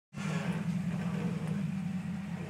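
A vehicle engine running steadily, a low even drone with no revving.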